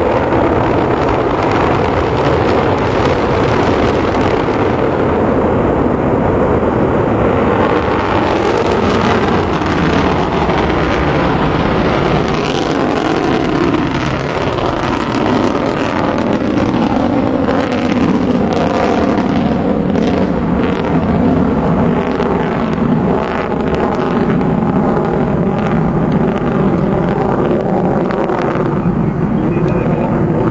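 Delta II rocket climbing after liftoff, its main engine and strap-on solid boosters heard from a distance as a loud, steady, unbroken rumble.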